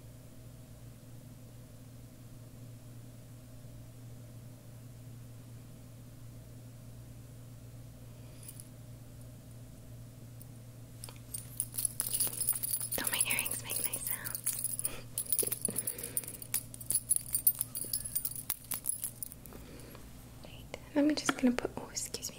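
A steady low electrical room hum. About halfway through comes a run of close crackling and light jingling from hands handling small objects right by the microphone, lasting about eight seconds before a whisper begins near the end.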